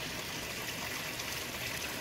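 Steady flow of water running and trickling into a blue-barrel aquaponics mechanical filter through its PVC inlet pipe, stirring the water around the black filter matting.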